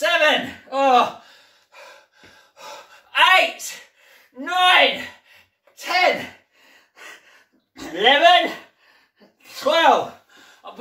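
A man's voice making short pitched vocal sounds about every second or two, each rising then falling in pitch, as he works a resistance band.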